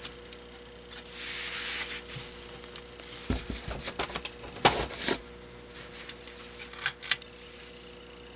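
Handling of a porcelain pull-chain lampholder: a brief rustle, a dull thump, then a few sharp clicks as the pull-chain switch is worked to turn on a GE 2D compact fluorescent bulb.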